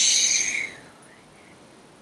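A person's long, forceful "shh" exhale through the mouth, a cat-cow yoga breath, fading out under a second in.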